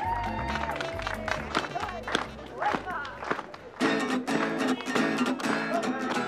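Acoustic guitar strummed in repeated chords, starting about four seconds in. Before that comes a held tone with scattered sharp clicks, over background music.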